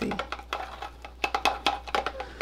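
A stirring rod clicking and tapping against the side of a plastic beaker as thick gel is stirred by hand: a run of light, irregular clicks, bunched in the second half.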